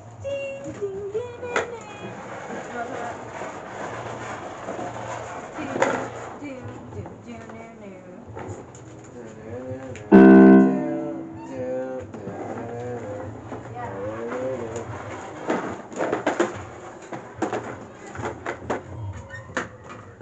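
Electronic keyboard: one loud chord struck suddenly about ten seconds in, dying away over a second or so, amid faint indistinct talking.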